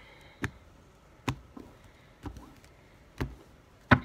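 About five short, sharp taps on a deck of tarot cards, roughly a second apart.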